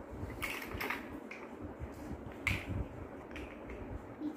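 Plastic building blocks clicking and clacking together as they are handled and pressed on, a few sharp clicks, the loudest about two and a half seconds in.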